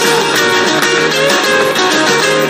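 Rock band recording: guitars playing a passage with no singing.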